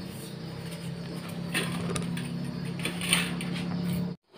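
Light metallic clinks and rattles of parts being handled and fitted on a Honda Vario 110 scooter, over a steady low hum.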